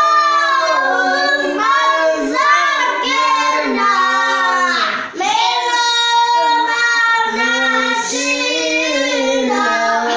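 Children and a young man singing together without accompaniment, with a short break for breath about five seconds in.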